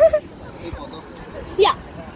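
Short wordless vocal sounds from a person: a wavering call that ends just after the start, and a quick upward-sliding yelp about one and a half seconds in.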